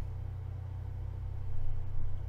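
A steady low hum with a faint hiss over it, swelling slightly near the end; no speech or music.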